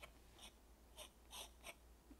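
Faint scratching of a hard H graphite pencil drawing about five short, light strokes on textured watercolour paper.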